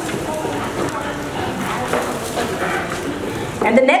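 Indistinct chatter of many voices in a large hall, with no single voice standing out; near the end a woman's voice comes in over the microphone.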